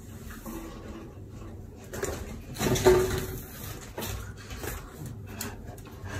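Rustling and knocking of a plastic-wrapped pack of pet pads as a golden retriever grabs it and carries it off, loudest in a short burst about two to three seconds in.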